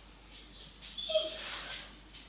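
Metal spoon scraping and squeaking against a stainless steel jam funnel as hot plum jam is spooned into a glass jar, with short high squeaks in the scraping.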